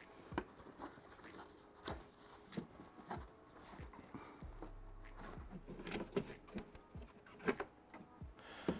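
Faint, scattered plastic clicks and knocks from an engine-bay fuse box cover being handled and unclipped, with a low steady hum coming in about halfway.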